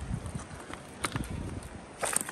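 Wind buffeting the microphone in low, uneven rumbles, with a few faint clicks about a second in.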